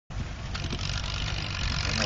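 Allis-Chalmers WD tractor's four-cylinder engine running with a steady low pulsing, slowly getting louder.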